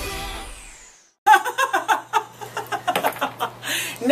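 Intro music with a falling whoosh fades out within the first second. After a brief silence a woman starts talking and laughing over a steady low hum from a room exhaust fan.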